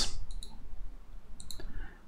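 Computer mouse clicking: a couple of quick clicks about a third of a second in, and another couple near one and a half seconds, over quiet room tone.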